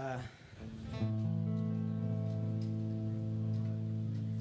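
About a second in, the band strikes a single chord on amplified guitars and keyboard and holds it steady, without fading.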